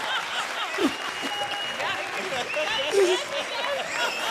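Studio audience applauding, with scattered voices over the clapping.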